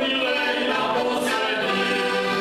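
Three heligonkas, Slovak diatonic button accordions, playing a folk tune together, with men's voices singing along in chorus.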